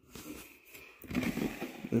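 Hands handling a white polystyrene foam packaging block, with irregular rubbing and scraping that grows louder about a second in.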